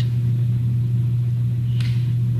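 Steady low hum with no speech, the constant background hum of the narration recording. A brief soft hiss comes near the end.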